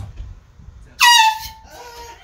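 Air horn blaring once about a second in: a loud high tone that dips slightly at its start, holds for about half a second, then fades.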